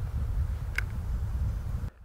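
Wind buffeting the microphone as a steady low rumble, with one faint click about a second in; it cuts off abruptly just before the end.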